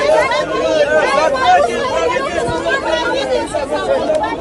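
A crowd of people talking over one another loudly, many voices at once with no single speaker standing out.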